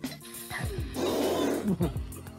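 Anime soundtrack: background music with a loud, rough, noisy cry like a roar from about one second in to just before the end.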